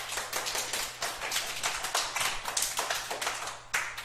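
A group of people clapping their hands in applause, a quick dense patter of claps that stops just before the end.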